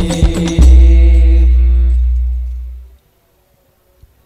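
Hadrah banjari ensemble of frame drums and bass drum with singers ending a piece: a few sharp drum strokes, then one very loud deep bass-drum stroke that booms and slowly fades while the last sung note is held. Everything stops about three seconds in.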